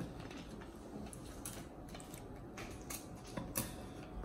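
A quiet kitchen with a few faint, light clicks and taps scattered through, a handful over a few seconds.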